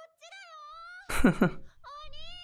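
A high-pitched young girl's voice from anime dialogue calling out in long, drawn-out syllables. A short, loud burst of a lower voice, most likely a laugh, cuts in about a second in.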